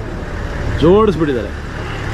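Steady low rumble of a vehicle's engine running, with one short spoken word about a second in.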